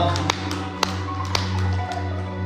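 Soft background music from a live band: a held low keyboard chord with sharp percussive taps about every half second.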